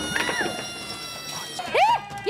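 A held, fading tone, then near the end a loud cat-like meowing call that rises and falls in pitch.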